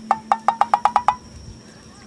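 A quick run of about nine hollow, wood-block-like knocks in roughly a second, each with a short ringing tone, as in a comic sound effect.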